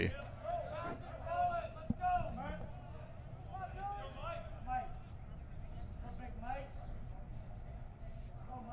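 Faint background talk with a steady low rumble underneath, and a single sharp click about two seconds in.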